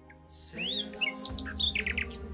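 A songbird chirping: a rising whistled note about half a second in, then a quick run of short chirps, over soft background music.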